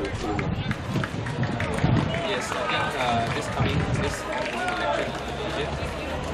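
Several voices calling and talking across an open rugby pitch, players and onlookers shouting at a distance, with scattered clicks and low rumbles from handling of the microphone.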